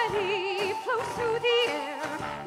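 Live musical-theatre singing in an almost operatic style: a voice with wide vibrato that leaps up in pitch in short, yodel-like jumps.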